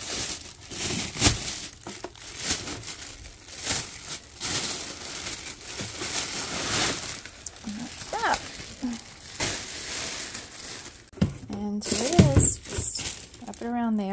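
Thin plastic waste-drawer bag crinkling and rustling in irregular bursts as it is handled in and out of a Litter-Robot 4 waste drawer.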